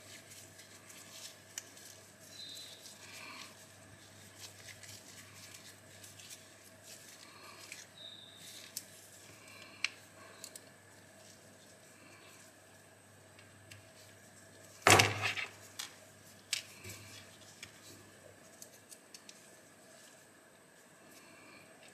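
Faint small clicks and metallic ticks of a precision screwdriver and tiny screws being worked into the steel liner of an Ontario Model 1 folding knife, with one much louder knock about fifteen seconds in.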